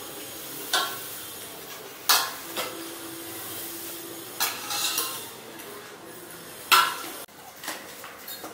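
Metal serving spoons clinking and scraping against stainless-steel bowls as food is served onto glass plates: a few separate sharp clinks, the loudest about two seconds in and near the end.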